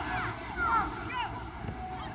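Young footballers shouting across the pitch: several short, high calls that rise and fall in pitch, over a low rumble of wind on the microphone.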